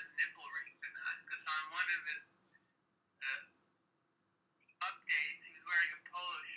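A voice talking over a phone or call line, thin-sounding, in short phrases with a pause of about two seconds in the middle broken by one short word.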